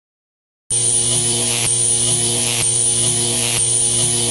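Electric buzzing sound effect for King Ghidorah's lightning beams: a loud, steady hum with crackling static that starts abruptly after silence, less than a second in, and repeats in a loop about once a second.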